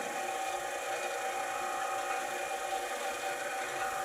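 Label web drive machine running steadily, pulling the label web past the sensor: an even whir made of a few steady tones over a hiss.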